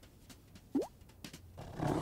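A single short rising 'bloop' sound effect about three-quarters of a second in, a quick upward pitch slide lasting a fraction of a second. Music starts to swell near the end.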